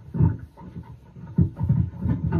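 Electric bass guitar played fingerstyle: a string of short, muted low plucks in an uneven rhythm, each note dying quickly.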